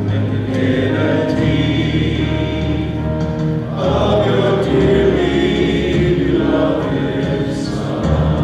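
A live praise-and-worship band playing a slow song, with several voices singing together over guitars, keyboard and drums.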